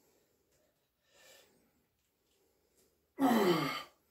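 A man's loud, effortful sigh, falling in pitch, near the end, from the strain of curling a barbell.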